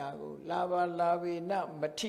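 A Buddhist monk's voice chanting a recitation, with one long held note in the middle.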